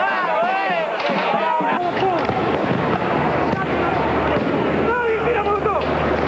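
Rioters shouting, loud and wavering in pitch, then about two seconds in the noise of a street riot: a dense din of shouting crowd with scattered sharp bangs and pops.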